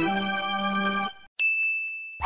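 Background music holding a chord that cuts off about a second in, followed by a single bright 'ding' sound effect: one clear high tone that rings steadily for just under a second, an approval chime for a checkmark graphic.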